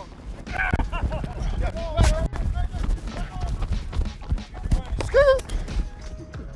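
Short wordless shouts and calls from players on a practice field, with a sharp crack about two seconds in and smaller clicks, over a steady low rumble on a body-worn microphone.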